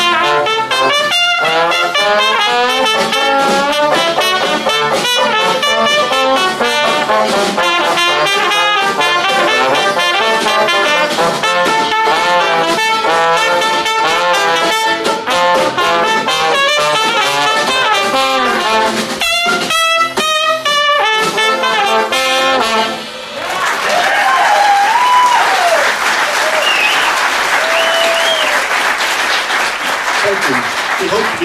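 Dixieland jazz band led by trumpet and trombone playing a busy ensemble chorus, with a few short breaks just before the final notes. The music ends about 23 seconds in and the audience applauds.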